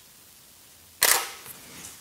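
Canon EOS 6D DSLR shutter release: one sharp mechanical click of mirror and shutter about a second in, dying away quickly, over quiet room tone.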